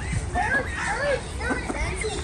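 Children's voices chattering and calling out in short bursts, over a steady low rumble.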